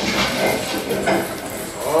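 A sudden burst of clattering from many small, light, hard objects rattling and bouncing together, made up of dense rapid clicks.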